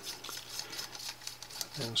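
Threaded aluminium saber hilt parts being turned apart by hand: a quick run of light metallic clicks and scrapes from the threads and handling.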